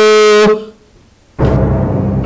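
Music track: a held, horn-like note cuts off about half a second in. After a short gap, low, dark dramatic music starts.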